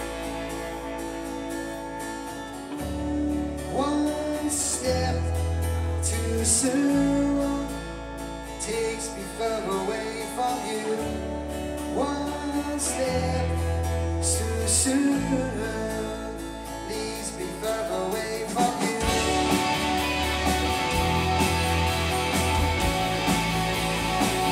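A live Britpop indie rock band playing: strummed acoustic and electric guitars over bass and drums, with a lead vocal. The band grows fuller and brighter about nineteen seconds in.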